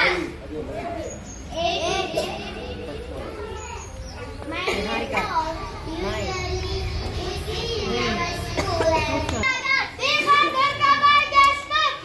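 A crowd of schoolchildren's voices talking and calling out over one another, growing louder and clearer near the end.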